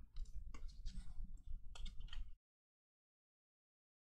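Faint clicks and rustles of baseball cards being flipped through by hand, for about two seconds, then the sound cuts off suddenly.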